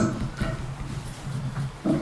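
Table-top gooseneck microphone being handled and moved across a table, heard through the microphone itself: a sharp knock at the start, then rubbing and scraping noises and another bump near the end.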